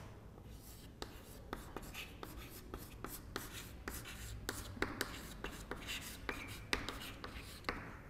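Chalk writing on a chalkboard: faint, quick, irregular taps and scrapes as the chalk forms the letters.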